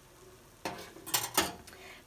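A few light knocks and clinks of a ceramic plate and metal kitchen utensils being handled, starting a little over half a second in.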